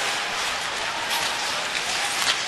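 Steady hiss of ice-hockey arena noise during play: crowd murmur and rink sounds with no single event standing out.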